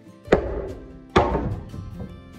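Two hammer blows on wood, a little under a second apart, each with a short ringing tail in the open timber barn, as a temporary wooden wall brace is knocked loose. Background music plays throughout.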